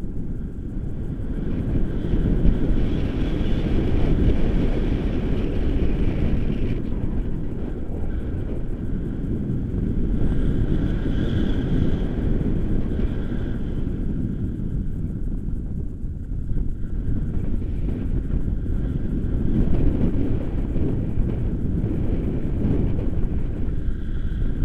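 Wind rushing over an action camera's microphone in paraglider flight: a steady low rumble that swells and eases a little.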